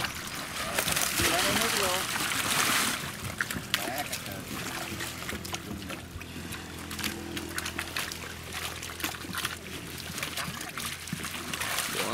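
Water splashing and sloshing as a wire-framed dip net full of live fish is hauled out of the river and emptied, with many small wet clicks and slaps from the fish and the net; the splashing is heaviest in the first few seconds. A steady low hum runs underneath in the middle stretch.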